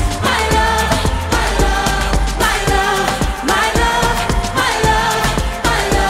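Pop song performed live: a woman singing, with gliding, drawn-out notes, over a backing of deep bass and a steady beat.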